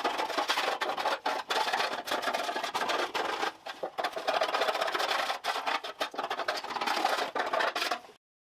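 Chisel and spatula scraping stripper-softened paint off a Mazda RX-7 FD3S fender: rapid, irregular rasping strokes, with a short pause about three and a half seconds in.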